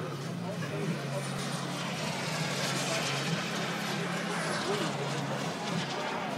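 Turbine-powered scale model BAE Hawk jets passing in flight: a rushing jet roar that swells and fades over a few seconds, with a faint high turbine whine falling in pitch as they go by.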